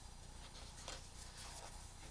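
Faint rustling of paper and card being handled, with a light tick about a second in.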